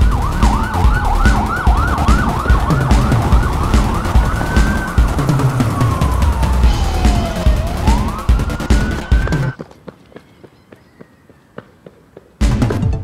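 A police-style siren over electronic music with a heavy beat. For the first four seconds or so it yelps in fast rising-and-falling sweeps, about three or four a second, then turns to slow wails that fall and rise again. Everything cuts off suddenly about nine and a half seconds in, leaving only faint clicks.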